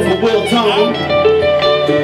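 Live band music: electric guitar played over sustained keyboard chords and bass.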